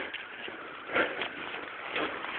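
A snowboard sliding slowly through deep powder snow, a faint steady hiss with one short, louder rustle about a second in, the board bogging down as it sinks into the powder.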